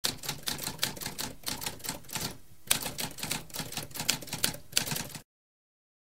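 Typewriter keys clacking in quick succession, about six keystrokes a second, with a brief pause midway. The typing stops about five seconds in.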